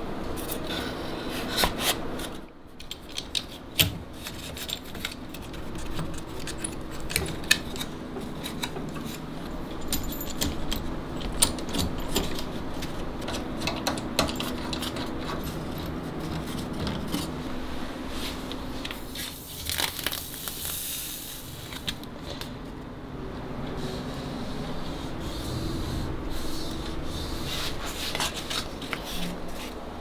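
Handling of violin ribs, blocks and a small metal clamp on a workbench: scattered clicks and taps of wood and metal with rubbing and scraping, including a longer scrape about two-thirds of the way through, over a steady low hum.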